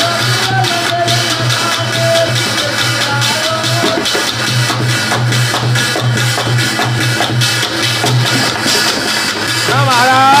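Dholak drumming with a brass thali played on a clay pot, giving a steady, pulsing low hum under the rhythm. A voice holds a few sung notes in the first three or four seconds.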